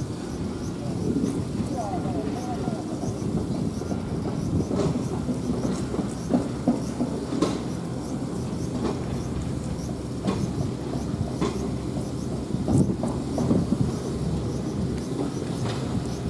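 A cat licking a lickable treat from a foil pouch held out by hand, with irregular soft clicks of tongue and wrapper, over a steady low rumble.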